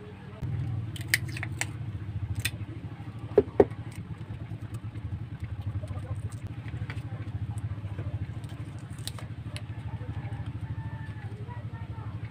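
Paper card and cardboard gift box being handled: light clicks and taps of card against the box, with two sharp taps about three and a half seconds in the loudest. Beneath them is a steady low rumble that starts about half a second in.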